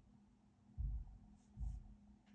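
Pen writing on a paper workbook page, with brief scratchy strokes and two dull low thumps about a second apart.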